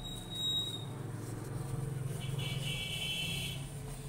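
Tissue rubbing on the glass and metal of a Xerox copier's laser (LD) unit during cleaning, with a brief high squeak near the start and a longer squeak about two seconds in, over a steady low rumble.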